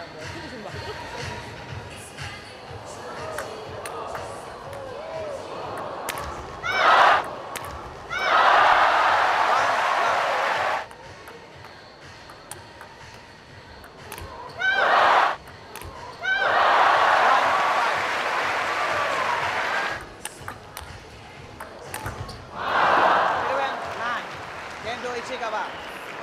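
Table tennis ball clicking off the bats and table during a rally, broken by several loud bursts of crowd cheering and shouting, each a few seconds long.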